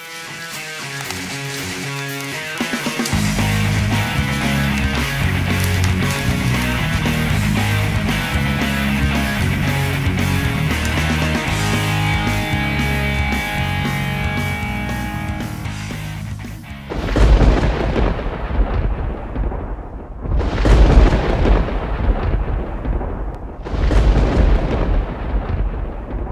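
Background music with a steady bass beat that comes in about three seconds in. About two-thirds of the way through, the music stops and gives way to three loud, deep booms a few seconds apart, each dying away over a couple of seconds.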